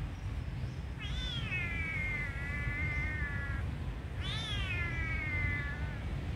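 Young kitten meowing: two long crying calls, the first about a second in and the second about four seconds in, each jumping up in pitch, then sliding down and holding. The kitten is crying for someone to help it.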